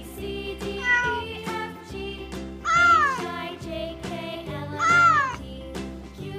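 Kitten meowing: two clear meows, each rising and then falling in pitch, about three and five seconds in, and a fainter one about a second in. Children's background music plays steadily underneath.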